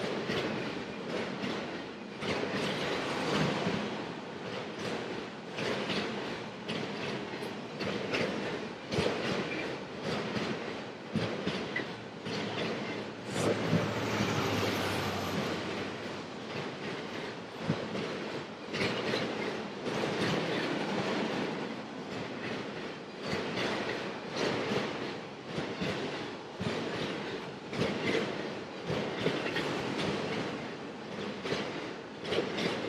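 Freight train of autorack cars rolling past at close range: a steady rumble of wheels on rail with irregular clattering. About halfway through, a mid-train diesel locomotive passes with a low engine drone.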